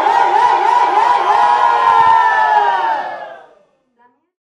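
A crowd shouting together in a loud collective cry, many voices held on wavering pitches. It fades out over the last second into silence.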